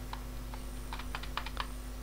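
Computer keyboard keystrokes: a scattered run of faint, light clicks, closer together in the second half.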